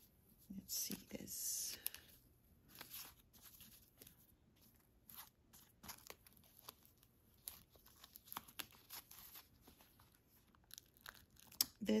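Thin tissue paper crinkling and tearing in short, irregular bursts as it is peeled off a leather loafer and its metal bit, loudest in the first two seconds.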